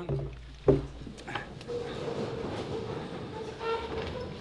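A single sharp thump under a second in, then the steady stir of a roomful of people, with low, indistinct murmuring voices.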